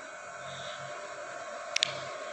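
Hands kneading a soft whole-wheat dough in a steel bowl, faint squishing over a steady background hum, with a brief sharp click near the end.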